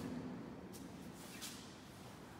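Faint steady rush of wind, with two brief higher hisses in the middle.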